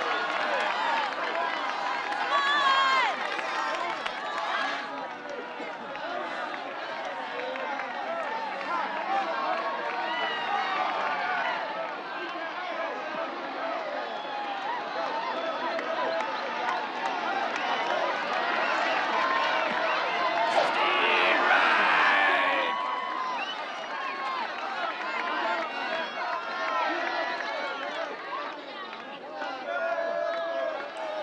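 Crowd of baseball spectators shouting and cheering, many voices overlapping without a break. The cheering swells loudest about two-thirds of the way through.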